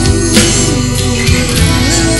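Instrumental passage of an alternative rock song, led by guitar over a full band, with a steady sustained sound and an occasional sharp hit.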